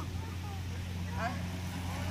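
Small electric scooter's motor giving a steady low hum, a second slightly higher tone strengthening about a second in.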